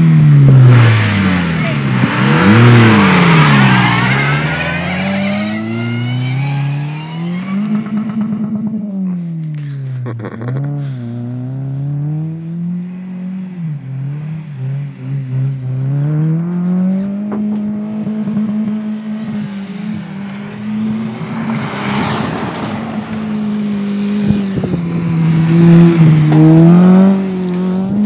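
Car engines revving hard as two cars launch from a standstill. Then the engines rise and fall in pitch again and again as the cars spin and drive in circles on the loose ground, loudest at the launch and again near the end.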